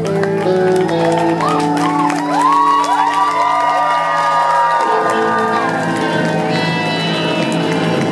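A live band's final held chord on guitar, upright bass and drums rings out while the crowd whoops and cheers. The chord stops about five seconds in, and cheering and applause carry on.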